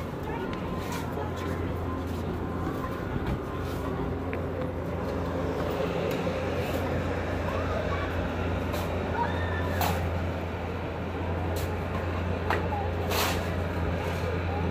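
A steady low mechanical hum with faint voices, broken by a few short, sharp clicks.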